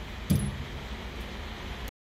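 Steady background hum of an indoor range booth, with a brief knock and a short low sound about a third of a second in. The sound cuts off just before the end.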